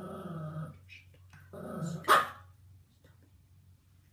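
Dog holding a long, low vocal note that stops about three-quarters of a second in, then a short build-up and one sharp bark about two seconds in.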